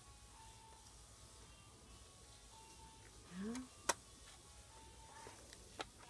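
Fiskars slide paper trimmer cutting a sheet: a quiet stretch with one sharp click just before four seconds in and a fainter click near the end.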